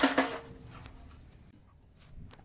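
A sudden metallic clatter as an old black steel radiator pipe is pulled and shifted, fading over about half a second, followed by a few faint clicks.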